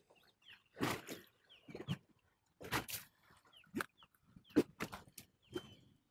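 Faint, scattered clicks and knocks from handling a just-caught largemouth bass, with a few short falling chirps mixed in.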